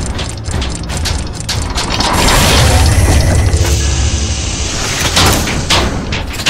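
Sound-effect gears and ratchets clicking and clanking over a deep low rumble. Several heavier hits come near the end.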